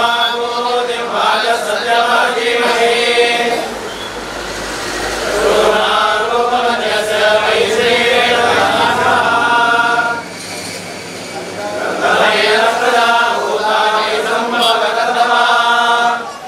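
Priests chanting Hindu ritual mantras in three long phrases, with short pauses for breath about four seconds in and about ten seconds in.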